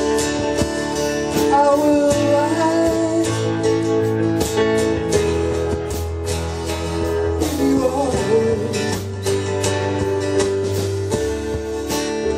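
Live band playing a slow acoustic song: two acoustic guitars strumming over piano from a stage keyboard and a drum kit keeping time.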